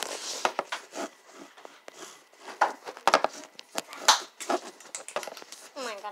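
Handling noise of a phone held in the hand: fingers rubbing, scraping and knocking close to its microphone in irregular bursts. A short falling pitched sound comes near the end.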